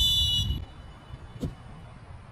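Referee's whistle blown once, a short shrill blast lasting about half a second. About a second later comes a single sharp thud.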